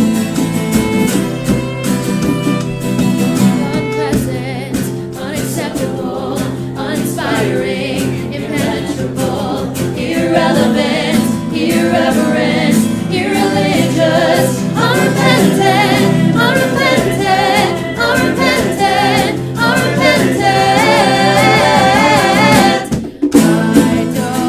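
A song with several singing voices over band accompaniment; sustained chords carry the first part, and a wavering sung melody grows stronger about halfway through. The music drops out briefly just before the end.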